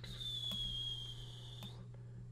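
Quiet room tone at a computer desk, with a faint high-pitched whine that drifts slightly lower, and two soft clicks of a computer mouse as the page is scrolled.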